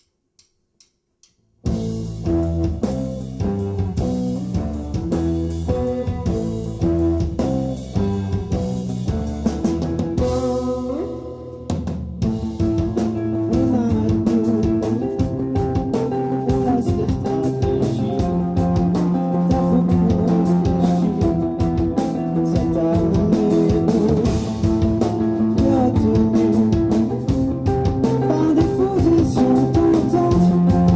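A live band launches into a song about two seconds in, after three faint ticks, then plays on loudly with guitar and drums.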